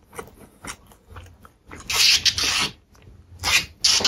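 Close-miked chewing with small mouth clicks, then two louder bursts of crackly rustling, the first about two seconds in and the second near the end, as a plastic fork rakes through a pile of instant noodles.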